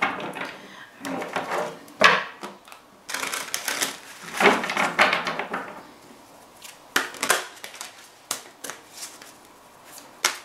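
A deck of tarot cards being shuffled by hand: bursts of cards rustling and flicking against each other, busiest in the first half, thinning to scattered clicks after about six seconds.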